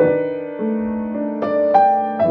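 Boston grand piano played in a jazz style: held chords, with new notes struck about half a second in and twice more near the end.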